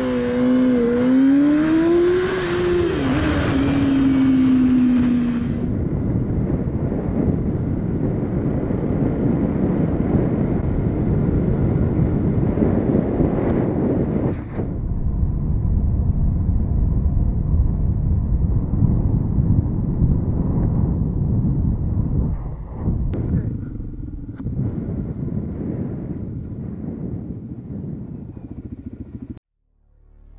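Motorcycle engine revving, its note rising and then falling over the first few seconds. It gives way to a steady rumble of engine and wind noise while riding, with an abrupt change in sound partway through.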